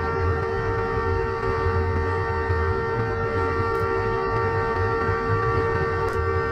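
Diesel locomotive air horn sounding one long, steady, unbroken blast, with a low rumble underneath, as a warning to buffaloes on the track ahead.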